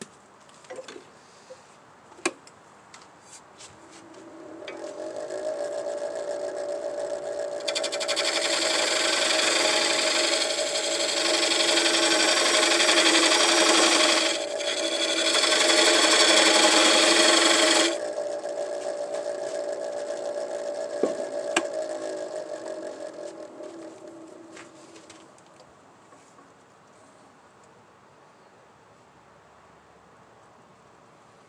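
Wood lathe motor spinning up with a steady hum, then a gouge cutting the spinning black walnut bowl blank as a loud hiss for about ten seconds with a short break partway through. The cut shapes the base for a tenon. The lathe then winds down and its hum fades out.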